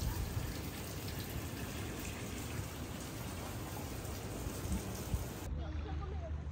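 Water trickling steadily down a small stone garden fountain, as an even splashing hiss. It cuts off abruptly near the end, leaving quieter, calmer background sound.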